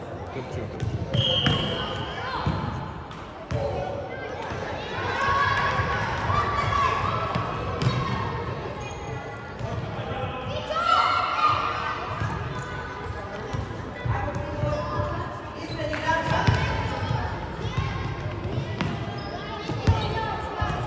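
A futsal ball being kicked and bouncing on a sports hall's wooden floor, with repeated sharp knocks among shouting voices of players and onlookers.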